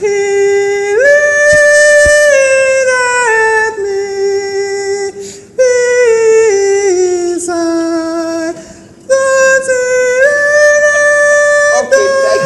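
A solo voice singing without accompaniment, in three long phrases of drawn-out notes. Each phrase steps down in pitch, with short breaks for breath between them.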